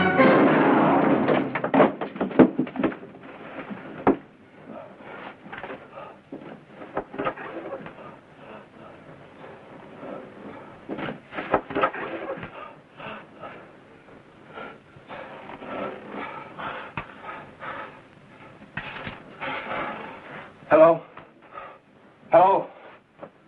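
Music fading out over the first two seconds, followed by a long run of scattered short clicks and knocks, like hands and objects being handled, with a brief voice near the end.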